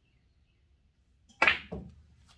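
Pool cue tip striking the cue ball low on the right (a draw shot with right English): a single sharp crack about a second and a half in, followed a moment later by a duller knock as the cue ball hits the object ball.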